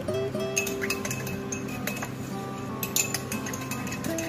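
Metal spoon clinking against the inside of a drinking glass while stirring a drink, a few sharp clinks scattered through, with a cluster about three seconds in. Guitar background music plays under it.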